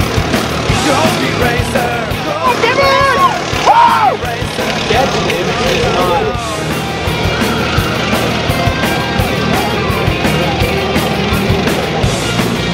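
Go-kart engines running on a racetrack under background music, with excited shouting voices that are loudest three to four seconds in.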